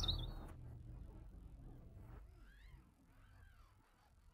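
Background music dies away, then a few faint, high bird chirps, each rising and falling in pitch, come about two and a half seconds in.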